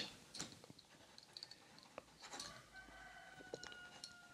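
Near silence with a few faint clicks, and in the second half a faint, drawn-out, slightly falling call from a distant rooster crowing.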